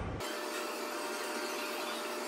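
Steady hiss with a faint, thin steady tone and no low sound, starting abruptly a moment in.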